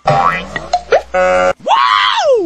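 Cartoon-style comedy sound effects: a string of short boing-like tones whose pitch slides, rising early on, a steady tone just past the middle, and a long rise and fall near the end.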